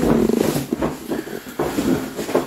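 Massage table creaking, with sheets and clothing rustling, as a person rolls from his side onto his back. A rough creak is loudest in the first half second, then smaller creaks and shuffles follow.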